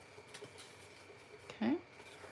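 Faint rustling and a few light taps of cardstock being folded and creased by hand, with a faint steady high whine underneath.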